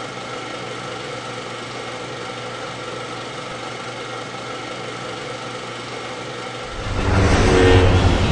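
A steady hum that holds one pitch throughout. About seven seconds in, it gives way to loud film soundtrack music over a deep rumble.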